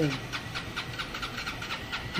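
City street background noise: a steady low rumble with faint, rapid, even ticking, and no single loud event.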